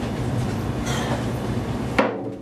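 Hand-held frame drum beaten in a fast, continuous roll, a dense rumbling wash of strokes that ends on one loud, sharp hit.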